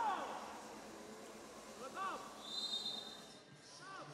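Quiet basketball-arena ambience with a few short, faint shouts that rise and fall in pitch, and one brief high, steady whistle tone lasting under a second, about two and a half seconds in.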